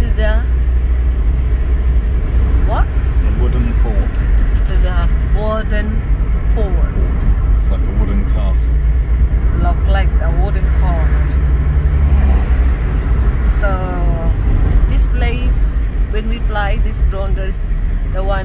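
Car driving, heard from inside the cabin: a steady low rumble of engine and road noise, with a slightly deeper hum for a few seconds in the middle.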